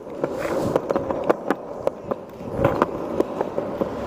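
Skateboard wheels rolling along a concrete sidewalk: a steady rolling hum broken by frequent, irregular clicks.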